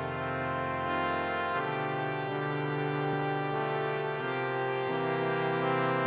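Instrumental music on keyboards: slow, sustained organ-like chords that change every two to three seconds.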